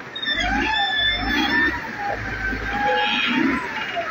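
Outdoor street noise: distant voices calling over a low engine rumble.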